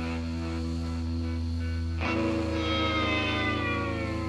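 Live rock band in a quiet instrumental break: electric guitar holding sustained notes over a steady held bass note, with a fresh chord struck about halfway through and left to ring.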